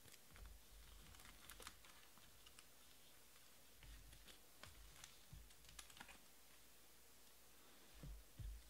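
Near silence with faint, scattered light clicks and taps in two loose clusters, in the first two seconds and again from about four to six seconds in, along with a few soft low thumps.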